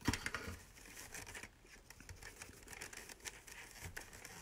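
Faint rustling and scratching of wide fabric ribbon being handled and scrunched into a small loop, with a short sharp click at the start.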